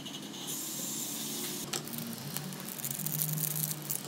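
Cutlery working at a plate of instant noodles with a crispy fried egg: two stretches of scraping and crackling, with a couple of sharp clicks between them.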